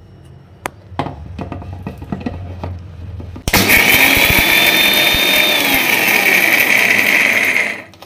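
Prestige Endura 1000 W mixer grinder running one short burst of about four seconds to coarse-grind dry roasted peanuts, roasted gram, dried red chillies and curry leaves, then cutting off. A few light clicks and knocks come before the motor starts.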